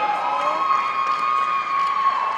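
A group of men cheering and yelling in celebration, one voice holding a long, steady high yell over the others.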